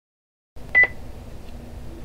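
A short electronic beep at one steady pitch, heard once just under a second in, over a faint steady background hum.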